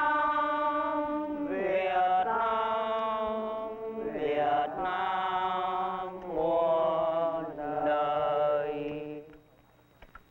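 Voices singing together in long held notes, phrase after phrase with short breaks every one to two seconds, ending about nine seconds in.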